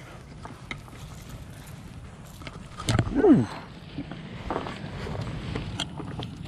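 Scattered clicks and rustling from handling fishing gear and a freshly landed bass on grass. About three seconds in there is a loud thump, then a short sound that slides down in pitch.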